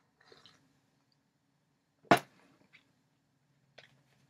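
Handling of a CD: a faint rustle, then one sharp knock about halfway through as the CD is put down on a hard surface, followed by a few light clicks.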